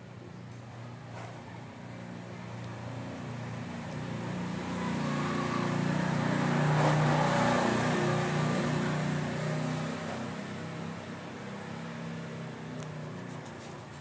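A motor vehicle passing by: a low engine hum and road noise that build slowly to a peak about halfway through, then fade away.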